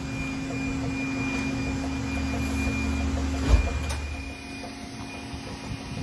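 Loose-fill insulation blowing machine running with a steady hum, a single thump about three and a half seconds in, after which the sound drops a little.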